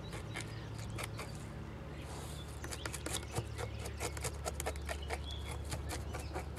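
Knife blade scraping the scales off a small bluegill on a plastic cutting board: a run of quick, irregular scratchy clicks that grows busier about halfway through.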